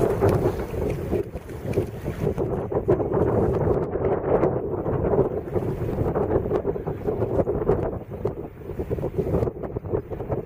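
Gusty wind buffeting the microphone: a rough, uneven rumble that rises and falls throughout.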